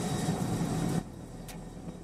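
Rocket engine noise from Starship SN15's Raptor engines firing in the landing burn, heard through a webcast's audio. It is a loud, even rush that drops off sharply about a second in, leaving a low hum.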